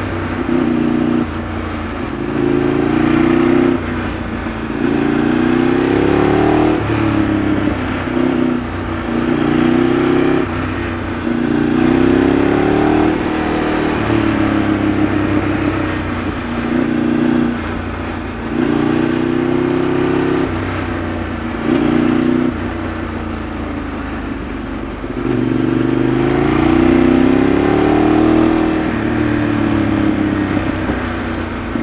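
Ducati 848 EVO's 90-degree L-twin engine under riding load, pulling up in pitch through the revs and dropping back about ten times as the throttle is rolled on and off and gears change through the bends.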